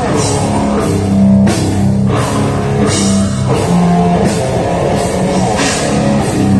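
Death metal band playing live: heavily distorted guitars and bass over a drum kit, with cymbal crashes sounding every second or so, heard loud from the crowd.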